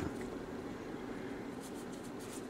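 Quiet room hiss with faint scratchy rubbing in the second half: a small stone being turned over in the hand.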